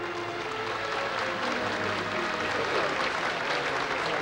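A crowd applauding, the clapping growing fuller after the first second, while soft violin music fades out beneath it.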